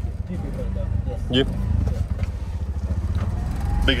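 Tuk-tuk (auto-rickshaw) engine running with a steady low chug, heard from inside the cab.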